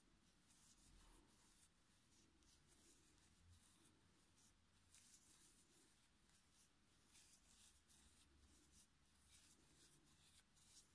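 Near silence, with faint scattered rustles and scratches of a crochet hook drawing yarn through the stitches.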